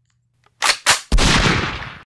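Two sharp gunshots about a quarter second apart, then a loud explosion with a deep rumble that fades out over about a second.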